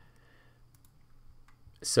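A few faint clicks of a computer mouse as a browser tab is selected, with a word of speech just at the end.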